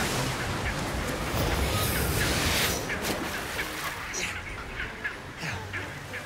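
Surf breaking and washing over rocks through the first few seconds, then chinstrap penguins calling with short, repeated squawks that come thicker in the second half.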